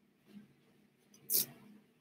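Brief rustle of a fabric dress being handled, with one short swish about one and a half seconds in, over a faint steady low hum.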